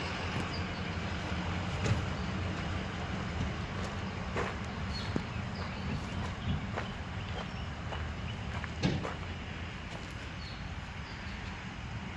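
Pickup truck engine idling steadily, with a few scattered footsteps.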